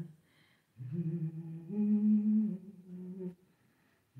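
A woman humming with closed lips: one phrase of a few held notes that step up and back down, starting about a second in and ending near the end.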